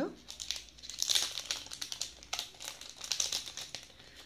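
Thin plastic jewellery packet crinkling as it is handled and opened to take out a pendant, in irregular crackly spells about a second in and again through the middle.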